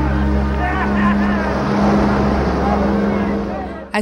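Film soundtrack: low sustained chords held under voices, fading out just before the end.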